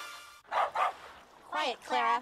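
A dog barking: two short barks about half a second in, then two higher, pitched yelps near the end, the first falling in pitch.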